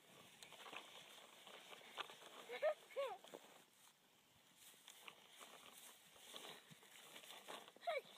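Kitten mewing: two short high-pitched mews about two and a half seconds in, then another brief mew near the end, with faint rustling in the grass between.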